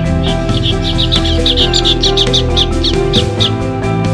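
Background music with a steady beat, over which a bird chirps in a quick run of short high notes, about five or six a second, stopping about three and a half seconds in.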